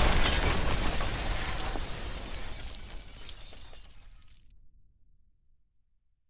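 Shattering, crumbling sound effect from an animated logo intro, fading away steadily over about four and a half seconds into complete silence.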